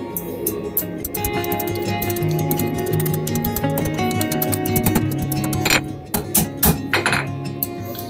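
Background music over a hammer striking a hot 10 mm steel rod on an anvil as its end is curled into a hook; two sharper strikes stand out about six and seven seconds in.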